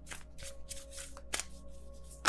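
Tarot deck being shuffled by hand: a quick run of short card-shuffling strokes, with a sharper snap about one and a half seconds in.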